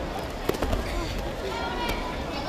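Sharp thud on the tatami mat about half a second in, followed by a few smaller knocks as the judoka scuffle and one goes down onto her hands and knees. Voices call out in the hall near the end.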